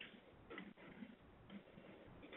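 Near silence: faint hiss of a teleconference phone line, with a few faint, brief sounds about half a second apart.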